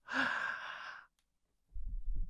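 A man's breathy sigh into a close microphone, about a second long. It is followed near the end by a few low bumps.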